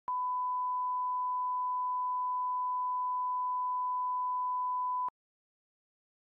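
Bars-and-tone test signal: a steady 1 kHz reference tone played with SMPTE colour bars. It holds one unwavering pitch for about five seconds, then cuts off suddenly.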